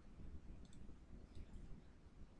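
Near silence with a few faint, short computer-mouse clicks, about a second in and again near the middle.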